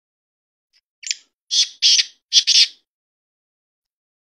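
Black francolin calling: a short first note followed by three loud, harsh notes in quick succession, the whole call lasting under two seconds.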